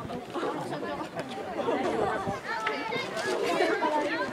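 Many overlapping children's voices chattering and calling out at once, with no single clear speaker.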